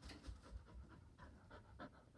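Border collie panting faintly in quick breaths, with a ball held in its mouth.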